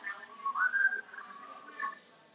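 A person whistling a tune: one clear note that slides up about half a second in, holds, then settles lower before stopping near the end.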